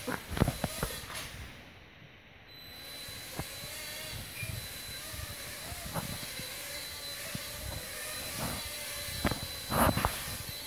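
Small toy quadcopter drone's motors running with a thin, steady high whine over a hiss, with a few sharp knocks near the start and again near the end.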